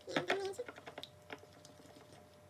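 Metal spoon stirring a gel mixture in a small ceramic bowl, giving a run of light clicks and scraping taps. The taps are densest in the first half-second and thin out afterwards.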